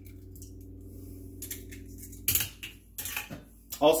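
Eggs being cracked against the rim of a bowl: a few sharp taps and shell clicks, mostly in the second half, over a faint steady hum.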